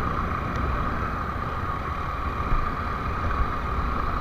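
Motorcycle riding noise heard from on the bike: a steady engine drone over an uneven low wind rumble on the microphone.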